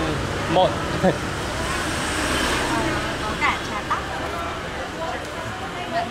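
Street traffic noise, a steady hum with a vehicle passing about two seconds in, under a few brief words.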